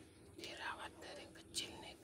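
Faint whispering by a person, with a short sharp click about one and a half seconds in.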